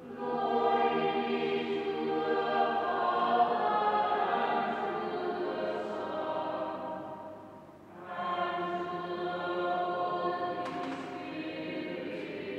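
Choir singing sacred choral music. One long phrase dies away about seven seconds in, and a new phrase begins about a second later.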